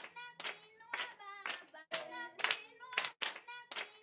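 Sample loop of a children's choir singing a Maasai-style chant over hand claps, previewed on its own at about two claps a second.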